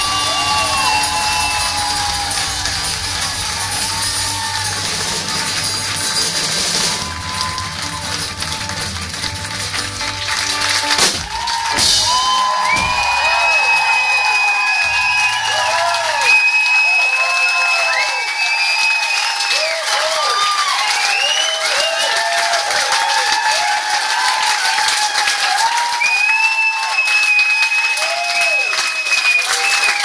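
Live bluegrass band with banjo, guitars and drums playing the last bars of a song and ending on a final hit about eleven seconds in. A club crowd then cheers, whistles and applauds, with long high whistles and shouts.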